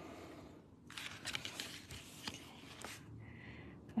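Fine-liner pen drawing on a paper art tile: faint scratching strokes with a few light ticks, and a short higher-pitched hiss near the end.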